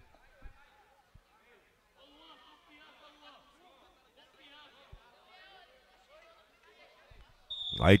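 Faint shouts and chatter of players and onlookers around a small artificial-turf pitch, with a few soft thuds of a football. A short, shrill referee's whistle sounds near the end, signalling the free kick to be taken.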